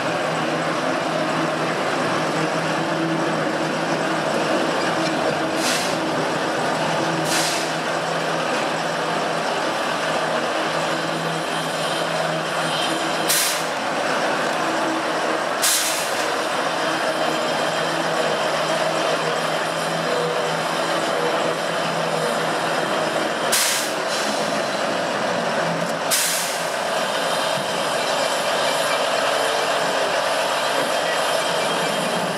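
Steam locomotive hissing steam while standing on a turning turntable, over a steady low hum. Short, sharp bursts of hiss break in about six times.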